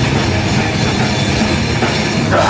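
Live metalcore band playing: distorted electric guitars and a pounding drum kit, loud and dense, with no vocals in these seconds.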